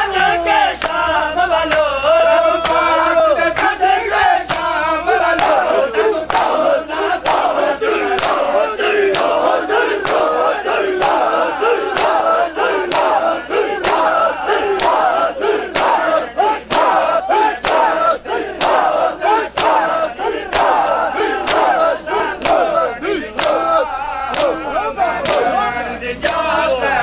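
A crowd of men chanting together over sharp, rhythmic slaps of hands beating bare chests (matam), about two slaps a second, kept in time with the chant.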